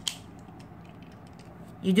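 Faint, light plastic clicks of a Beyblade top being fitted onto its launcher by hand, with a sharper click at the start. A voice begins speaking near the end.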